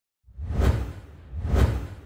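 Two whoosh sound effects with a deep low rumble under them, about a second apart, each swelling up and fading away.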